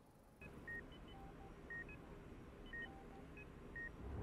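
Faint electronic beeps from hospital patient monitors, short tones at several different pitches sounding irregularly a few times a second, over a low steady background hum.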